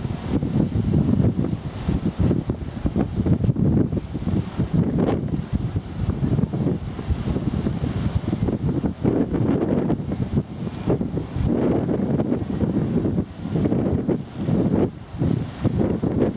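Gusty storm wind blowing across the microphone: a loud, low rushing noise that swells and drops unevenly from gust to gust.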